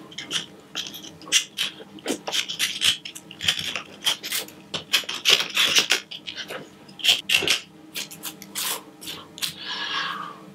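Small carving knife scraping and cutting bark off an Italian cypress (Cupressus sempervirens) trunk in quick, irregular strokes. The bark is being stripped along a line to extend the shari (deadwood).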